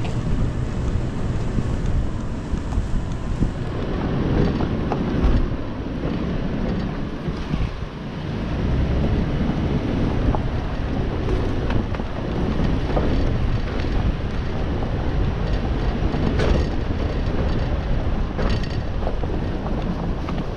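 2020 Toyota 4Runner TRD Off Road driving on a rough dirt trail: a steady low rumble of its V6 engine and tyres on dirt, with wind on the microphone and a few sharp knocks as it goes over the bumps.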